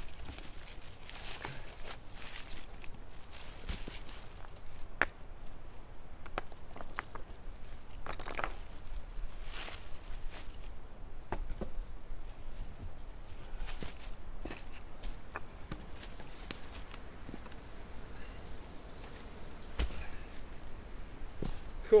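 Rocks being set and shifted around a stone fire ring, with irregular knocks of stone on stone and rustling of dry leaves as they are moved.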